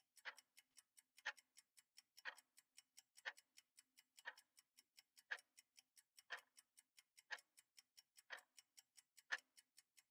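Quiet clock-style ticking from a countdown timer, one clear tick each second, with fainter ticks in between.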